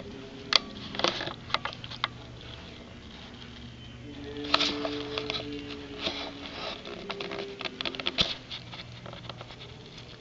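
Footsteps crunching over sunflower seed shells scattered on a carpeted floor, heard as irregular crackles and clicks that come thickest about halfway through, over a steady low hum.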